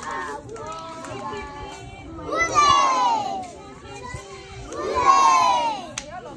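A crowd of young children shouting together twice, each loud group shout falling in pitch, with quieter voices in between.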